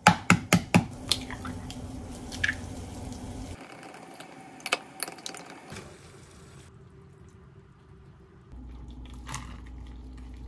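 Cooking in a kitchen: about five sharp clicks against a small glass bowl in the first second and a half as an egg is cracked and worked in it, then softer wet sounds of ingredients going into a pot of broth and being poured out, with a few lighter clinks.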